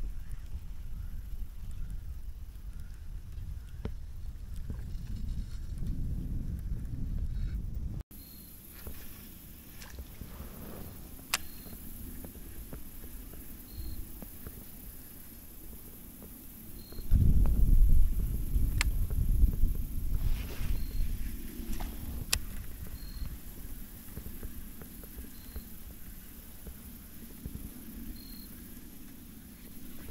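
Wind buffeting the microphone as a low, uneven rumble. It drops suddenly about a quarter of the way in, then swells loud in a strong gust past the middle. A few sharp clicks are scattered through it.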